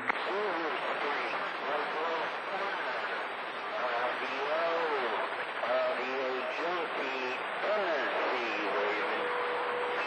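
CB radio receiving skip on channel 28: steady static with a weak, muffled voice of a distant station buried in it. A short steady tone comes in near the end.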